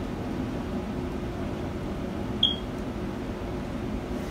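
A steady low hum with one short, high beep about two and a half seconds in.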